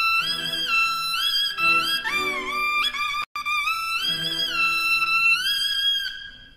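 Suona, the Chinese double-reed horn, playing a bright melody whose notes slide up into held, wavering tones, over an orchestra's bowed strings. The sound cuts out completely for a split second a little past halfway.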